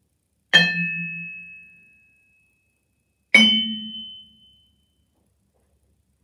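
Two single yarn-mallet strikes on low vibraphone bars, each played as a multiphonic harmonic with a finger lightly touching the bar. Each sounds as a chord of a low tone and two strong high partials, which ring on and die away over about two seconds. The second strike is a little higher in pitch than the first.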